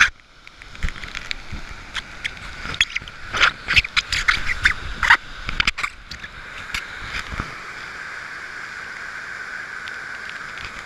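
Steady rush of a mountain stream in spate, mixed with wind and rain. Between about two and six seconds in comes a run of sharp knocks and scrapes right at the microphone, as the camera is handled and brushed against clothing.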